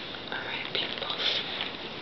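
Soft, breathy vocal sounds from a woman close to the microphone, like whispering or heavy breathing, growing a little louder about half a second in.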